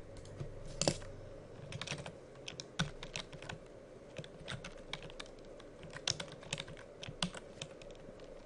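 Computer keyboard typing: irregular runs of keystrokes, with one louder click about a second in.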